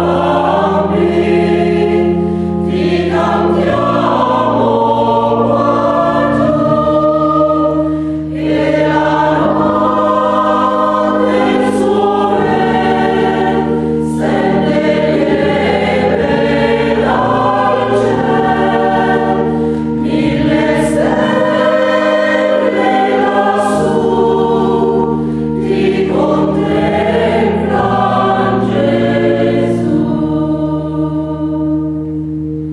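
Mixed choir of sopranos, altos, tenors and basses singing a Christmas carol, accompanied by sustained low keyboard notes that change pitch in steps under the voices.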